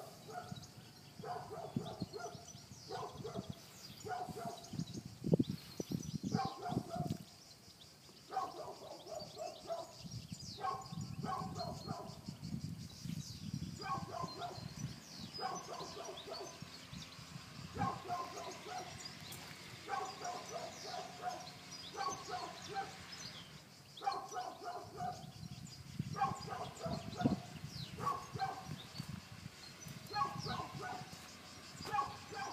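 An animal calling over and over, in clusters of short, quick notes every second or two, with brief pauses about eight seconds in and again near three quarters of the way through.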